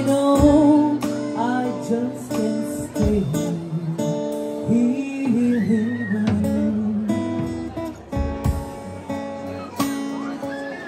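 A live song: a woman sings a melody into a microphone over a strummed acoustic guitar.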